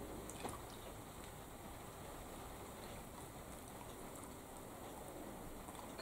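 Quiet room tone: a faint steady hiss, with a couple of soft clicks in the first half second.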